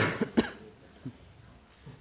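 A man coughing into a lectern microphone: two short, sharp coughs within the first half second.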